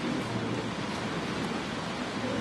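Steady, even background noise of a crowded indoor lobby, with no distinct voice or event standing out.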